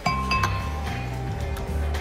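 Glass clinking as wine is poured: the wine bottle's neck taps the rim of a glass wine glass twice, about half a second apart, each clink ringing briefly. Background music with a steady low beat plays underneath.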